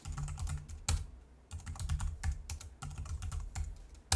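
Typing on a computer keyboard: several quick runs of key clicks with brief pauses between them.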